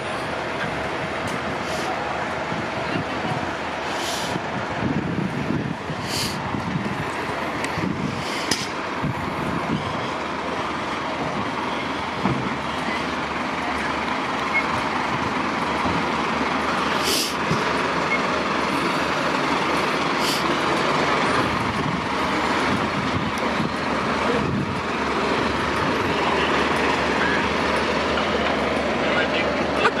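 Fire engines' diesel engines running steadily at a scene, getting a little louder in the second half, with a few short high hisses.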